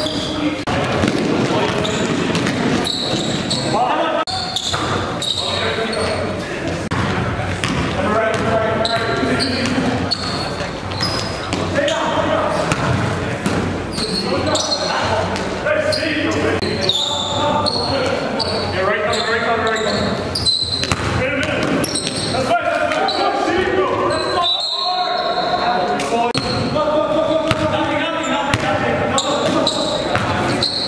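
Basketball game in an echoing gym: the ball bouncing on the court, with players' voices calling out throughout.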